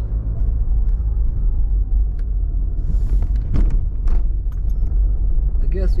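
Steady low rumble of a car's engine and tyres heard from inside the cabin while driving slowly, with a brief hiss about three seconds in and a few faint clicks soon after.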